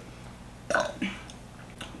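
A person burping once, loudly, less than a second in, with a short voiced tail.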